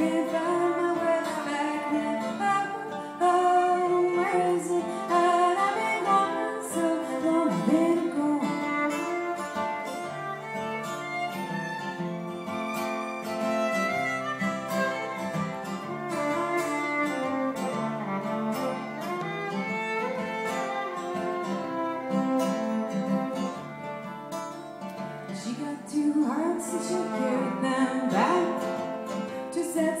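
Fiddle and strummed acoustic guitar playing together in an instrumental break between sung verses, the fiddle carrying the melody with sliding notes over the guitar's steady strumming.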